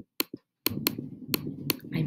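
Sharp single clicks of a computer pointing device, about six in two seconds at uneven spacing, as a page-back button is clicked over and over.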